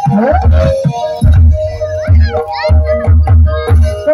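Loud ebeg accompaniment music: held keyboard-like tones over a heavy low drum beat about twice a second, with voices over it.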